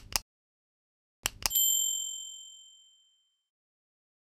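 Subscribe-button animation sound effect: a quick double mouse click right at the start, another double click about a second later, then a bright bell ding that rings and fades away over about two seconds.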